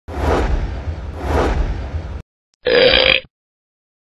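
Logo sound effect: two rumbling swells, each a little over a second long, then after a short gap a brief, louder sharp burst that cuts off abruptly.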